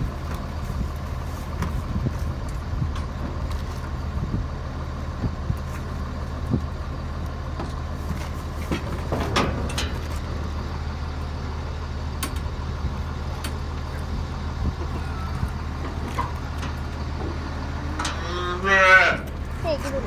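A young Jersey bull calf bawls once near the end, a single call about a second long that rises and falls in pitch, over a steady low engine hum.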